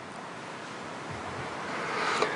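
Soft, steady hiss of room noise picked up by the pulpit microphone during a pause in speech, slowly growing louder toward the end.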